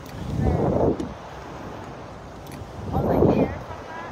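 Wind rushing over the microphone of the swinging Slingshot ride capsule, coming in two loud swells about two and a half seconds apart as it swings through the air.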